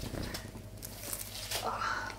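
Soft rustling and handling as a long-haired cat is lifted and held close, fur and clothing brushing near the microphone. A short, soft vocal sound comes about one and a half seconds in.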